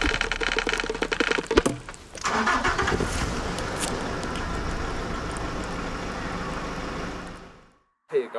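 A car engine starting: rapid rhythmic cranking for the first second and a half, then it catches with a sudden burst about two seconds in and runs steadily, fading out near the end.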